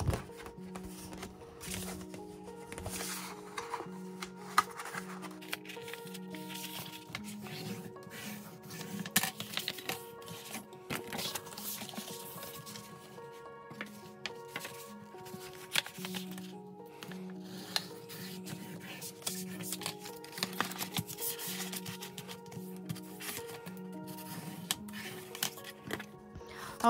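Soft background music with a repeating pattern of held notes, over the rustle, crackle and rubbing of cardstock being folded by hand along its score lines.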